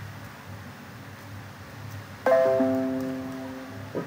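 Electronic notification chime: a few pitched notes struck in quick succession about two seconds in, ringing and fading away over nearly two seconds. A low steady hum of room noise lies under it.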